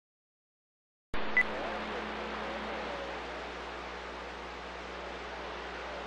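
CB radio receiver static: an even band-noise hiss from the radio that switches on abruptly about a second in, with a brief tone blip just after.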